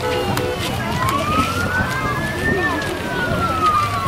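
A siren wailing in one slow cycle: its pitch climbs from about a second in, peaks a little past halfway, then slides back down toward the end.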